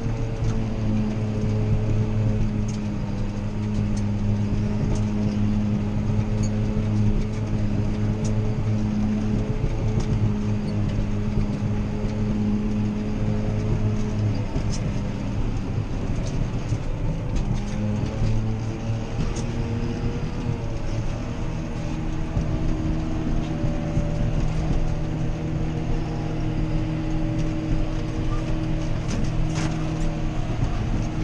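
John Deere 7530 tractor's six-cylinder diesel running steadily under load, heard from inside the cab, with the forage harvester working alongside. About two-thirds of the way through, the engine note settles at a higher pitch. Light scattered ticks sound over the drone.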